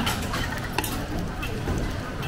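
Egg omelette sizzling as it fries in hot oil in a steel wok, with a metal ladle pressing and stirring it. Two sharp metal clinks of the utensil on the pan, one at the start and one a little under a second in.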